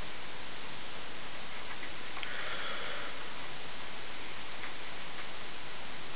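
Steady hiss of a microphone's noise floor, with a faint sniff at the beer between about two and three seconds in.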